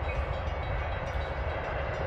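Metra SouthWest Service diesel commuter train approaching, a steady low rumble.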